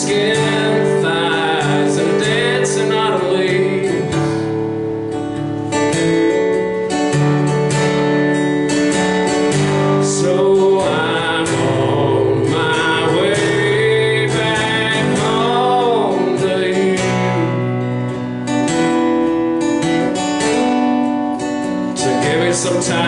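A man singing with his own strummed acoustic guitar, a country-folk song played live.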